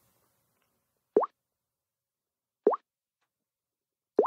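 Two short, rising 'bloop' touch-feedback tones from a Samsung Galaxy S4 as its screen is tapped, about a second and a half apart.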